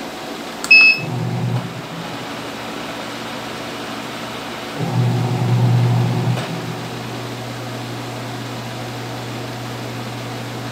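A single short beep from a washing machine's universal control panel as a button is pressed, then the washing machine starts a steady low electrical hum that swells louder twice, for about a second each time.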